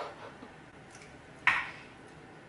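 Mostly quiet, with one short, sharp mouth sound about one and a half seconds in as the freshly blended homemade almond milk is tasted from the blender jar.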